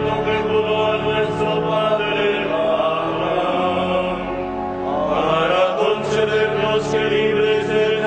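Sung liturgical chant from the morning prayer of Lauds, voices moving over long held notes.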